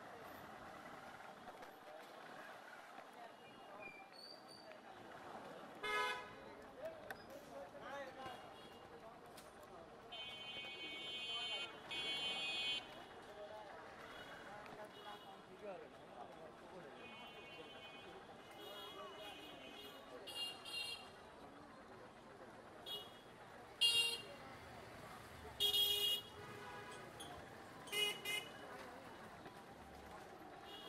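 Vehicle horns honking in busy street traffic: a short blast about six seconds in, a longer pair of honks around the middle, and several more short honks in the second half, over a steady din of traffic and people's voices.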